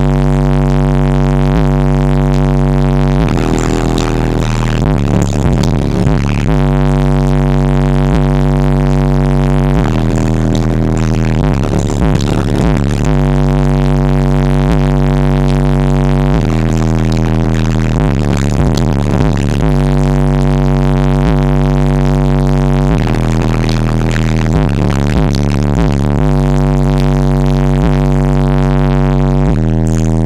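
Loud bass-heavy music played through a Kicker 15-inch Solo-Baric subwoofer: long held bass notes, broken every few seconds by busier passages.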